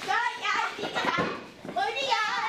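Young children's high-pitched voices, shouting and calling out as they play.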